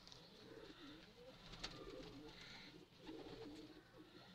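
Domestic pigeons cooing faintly, a low warbling coo in two bouts, the second starting about three seconds in.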